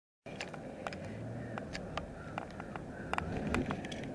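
A car driving, heard from inside the cabin: a steady low rumble of engine and road noise, with irregular sharp clicks throughout.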